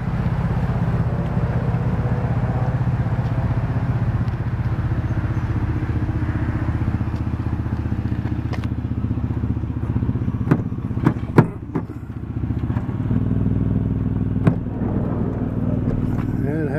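2003 Ford Windstar's V6 engine idling steadily. About ten seconds in comes a quick series of sharp clicks and clunks as the side door latch is worked and the door opened, with one more click a few seconds later.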